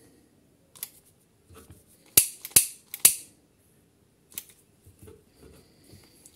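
A few sharp clicks and knocks from tools being handled and set down on a workbench, the loudest three close together in the middle, with faint rustling between.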